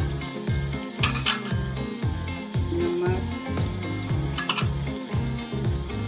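Background music with a steady deep beat over oil sizzling in a steel cooking pot. Two short sharp bursts come about a second in and again around four and a half seconds.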